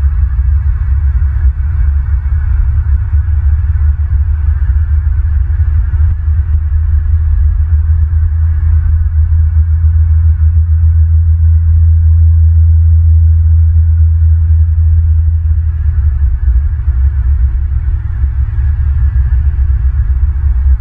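A loud, steady low rumble and hum, with no distinct events, swelling slightly in the middle.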